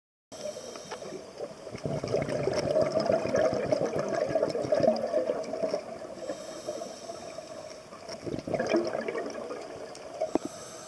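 Underwater bubbling and water noise, crackly and irregular, starting after a moment of silence, swelling for a few seconds around the middle, easing, then flaring again near the end.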